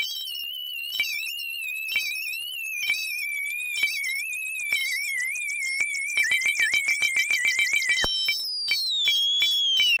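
Electronic soundtrack: a single wavering high tone drifting slowly lower, with a steady train of clicks that grows denser toward the end. About eight seconds in, the tone cuts off suddenly and a higher tone glides downward.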